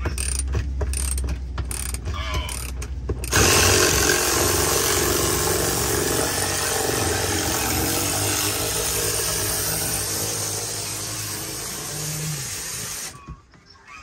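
A cordless ratchet running on a seat-bracket bolt, a rapid clicking over a low motor hum for about three seconds. It is followed by a loud, steady rushing noise that lasts about ten seconds and stops shortly before the end.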